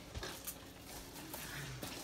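Faint rustling and a few light clicks of an artificial Christmas tree's branches and a tree topper being handled at the top of the tree.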